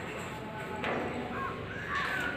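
A bird calling a couple of times in short hooked calls, over a steady background hiss. A single sharp knock sounds just under a second in.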